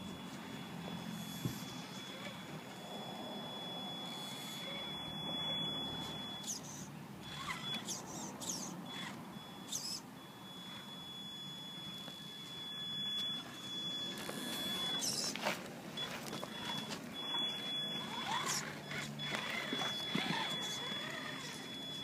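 Traxxas Summit RC truck's electric motor and drivetrain whining in short spurts as it drives over gravel and climbs onto wooden planks, with tyres scrabbling and knocking on the wood.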